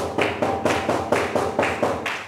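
A rapid, even run of sharp taps or claps, about four or five a second, that starts and stops abruptly.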